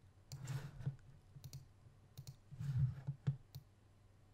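Computer mouse clicking: a scattering of short, sharp clicks, several in quick pairs, with a couple of softer, duller sounds among them.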